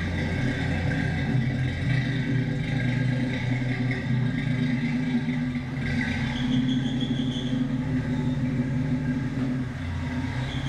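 A classic car's engine running at a steady low idle as the car backs slowly into a garage bay.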